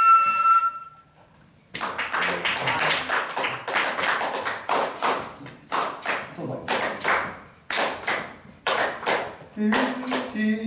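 A held flute note ends under a second in; after a short pause, hands clap a quick rhythm, about three claps a second, with high metallic jingling joining in from about halfway.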